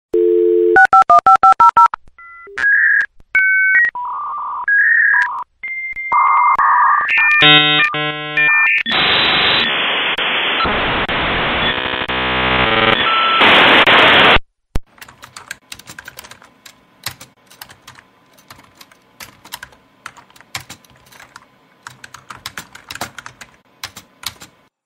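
Dial-up modem connecting: a dial tone, rapid touch-tone dialing, a run of handshake tones, then several seconds of loud hissing, warbling noise that cuts off suddenly just past halfway. Quieter keyboard typing clicks follow.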